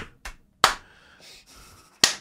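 Two single hand claps about a third of a second apart, the second louder.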